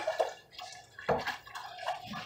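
Turkey broth being stirred in a metal stockpot with a silicone utensil: a few short, soft sloshes and scrapes.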